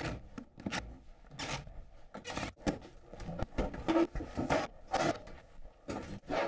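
Rocket stove riser's sheet-metal outer skin being worked loose and pulled off over its insulation: irregular scraping and rubbing of metal, with small knocks.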